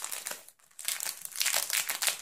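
Clear plastic packaging crinkling as a sticker sheet in its cellophane sleeve is handled and opened: a short burst of crackling, then a longer, louder one starting about a second in.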